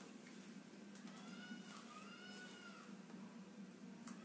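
Near silence with a faint steady low hum, and two faint drawn-out squeaky calls, each rising then falling in pitch, one after the other between about a second and three seconds in.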